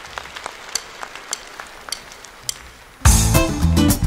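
Sparse clapping from a concert audience. About three seconds in, a band comes in suddenly and loudly, led by a strummed twelve-string acoustic guitar over heavy bass.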